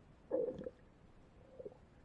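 Muffled underwater gurgle of air bubbles picked up by a submerged camera: one bubbling burst lasting about half a second, starting about a third of a second in, and a shorter, fainter one near the end.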